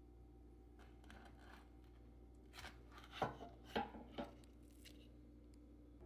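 Toasted sandwiches handled and set down on a wooden cutting board: a handful of faint knocks and scrapes in the middle stretch, over a low steady hum.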